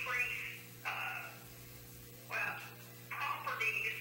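Indistinct speech from across a small meeting room, picked up faintly in several short stretches over a steady low electrical hum.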